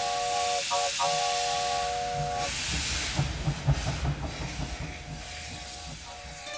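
Steam locomotive whistle sounding a chord for about two and a half seconds, broken twice briefly near the start, over a steady hiss of steam. After the whistle stops the hiss goes on, with uneven low thuds, fading near the end.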